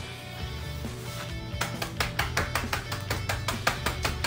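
Quick, evenly spaced blows, about four or five a second beginning about a second and a half in, on a plastic zip-top bag of Oreo cookies, crushing them. Soft guitar music plays underneath.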